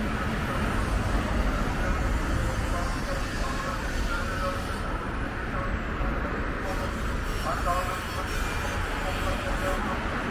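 Street ambience: steady rumble of road traffic with indistinct chatter of passersby.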